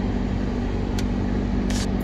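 Car running slowly, heard from inside the cabin as a steady low hum of engine and tyre noise. A single sharp click comes about a second in, and a short hiss near the end.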